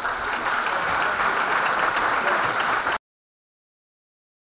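Lecture-theatre audience applauding, steady and dense, cut off suddenly about three seconds in.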